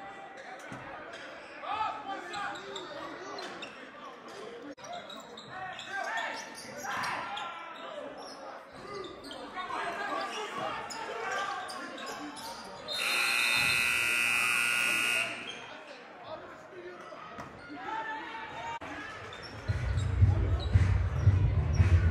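A gym scoreboard buzzer sounds once for about two and a half seconds over crowd chatter and basketballs bouncing on a hardwood court. Near the end a loud, low booming comes in.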